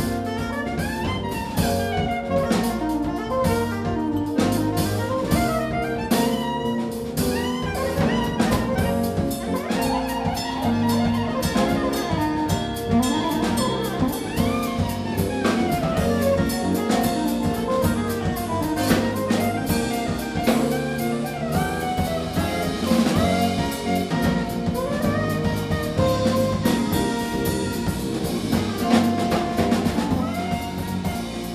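Live jazz band playing an instrumental piece: saxophone melody over keyboard, electric bass and drum kit, with a steady beat.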